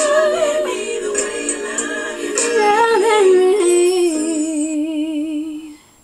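A woman's solo singing voice carries a slow ballad's closing phrase with wide vibrato. It runs down through a melismatic line and settles on a long held, wavering note that cuts off just before the end.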